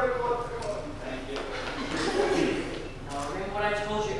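Young performers' voices in a large hall: a held, drawn-out vocal call at the start and another about three seconds in, with indistinct talk between.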